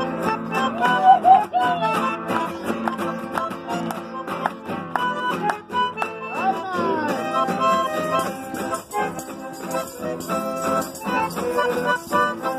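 Folk dance music in chacarera rhythm playing steadily, with people clapping along to the beat.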